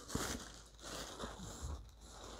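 Faint, irregular rustling and crinkling of paper as hands rummage through red paper packed inside a mailed box.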